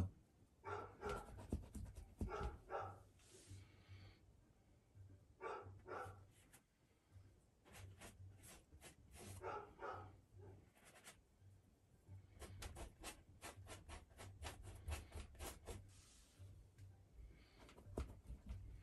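Quiet scratching and rubbing of a paintbrush laying thick white oil paint onto canvas and working it on the palette, in short runs of strokes with pauses between, and a quick run of strokes in the second half.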